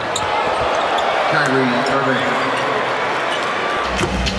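Basketball arena crowd noise during live play: a steady murmur from the crowd, with a basketball bouncing on the hardwood court.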